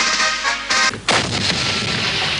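Weapons fire over background music: music plays for about a second, then a sudden loud burst of gunfire comes in and runs on as dense, continuous noise.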